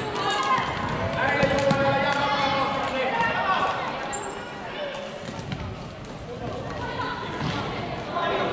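Voices of players and spectators calling out in a large, echoing sports hall during a floorball game, mixed with scattered short clicks and knocks of sticks and the plastic ball on the court.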